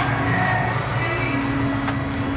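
Music playing over the steady low rumble of a classic car's engine as it cruises slowly past.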